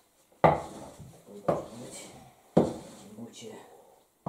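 Three heavy knocks about a second apart as stiff bread dough is kneaded by hand in an enamel basin, the basin clunking on the table with each push, each knock ringing briefly.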